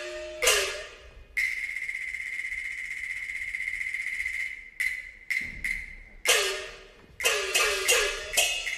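Cantonese opera percussion ensemble playing: one struck stroke, then a sustained ringing roll for about three seconds, a few separate sharp strokes, and a fast rhythmic run of strokes near the end.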